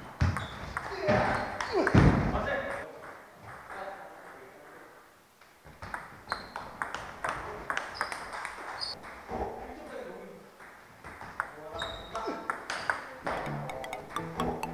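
Table-tennis rally: the celluloid ball ticks sharply back and forth off rubber bats and the table in quick succession. Fainter ticks come from a rally at another table.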